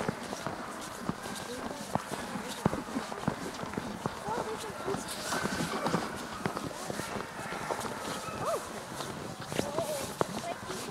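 Footsteps crunching on a packed snow trail, with indistinct voices of people around.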